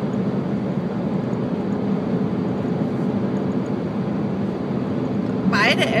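Steady low road and engine drone heard inside a moving car's cabin.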